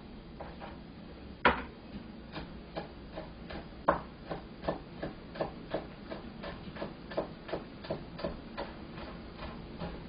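Kitchen knife slicing scallions thinly on a cutting board: a steady rhythm of short knocks on the board, about three cuts a second, the first stroke the loudest.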